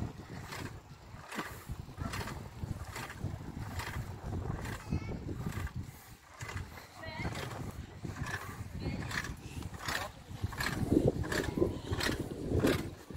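Wind buffeting a phone's microphone outdoors, a continuous low rumble, with a regular tread of footsteps on stone paving.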